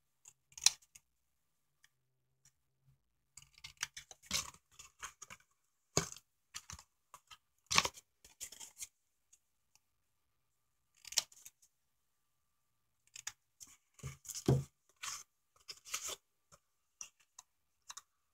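Scissors snipping the thin cardboard of a candy box, several short, separate cuts at irregular intervals with quiet gaps between.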